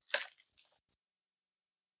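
Thin Bible pages being turned by hand: one brief papery rustle just after the start, followed by a few fainter soft rustles.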